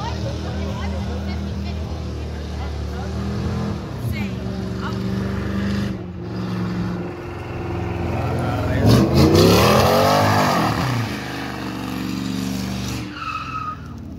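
Lincoln Mark VIII's V8 held at high revs through a burnout, with tyre squeal. About nine seconds in the engine revs sharply up and falls back, the loudest moment, before settling back to a steady run.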